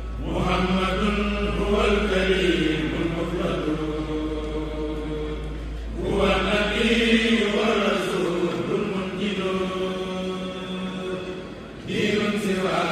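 A Mouride kourel of male voices chants a xassida together through microphones in long, held phrases. A new phrase begins about every six seconds.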